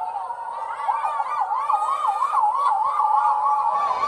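Women's voices making a high-pitched, wavering hooting cry, the pitch swinging up and down about three times a second like a siren.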